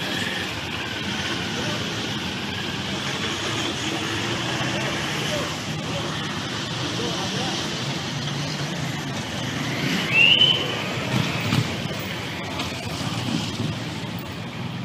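Busy street noise: a mix of people's voices and vehicle engines running close by as police vans pull past. About ten seconds in there is a short, loud, high-pitched call.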